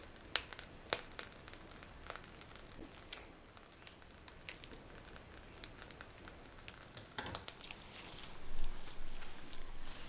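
Cheesecake cream being piped from a plastic piping bag through a metal nozzle: soft wet squishes and scattered small clicks. Near the end there is louder crinkling of plastic.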